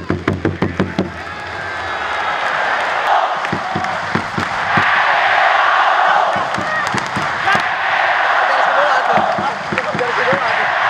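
Large marching bass drum beaten quickly, about five strokes a second, stopping after about a second. A big stadium crowd's cheering and chanting then swells and carries on, with a few scattered drum beats.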